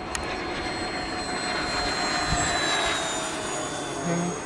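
E-flite A-10 model jet's twin electric ducted fans whining steadily as it flies a low pass, the whine sliding slightly lower in pitch through the second half.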